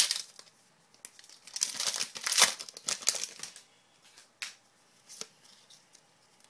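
A foil trading-card pack torn open by hand, its wrapper crinkling, with one sharp rip at the start and a longer run of loud tearing and crinkling from about one and a half to three seconds in. A few soft clicks follow as the cards are pulled out.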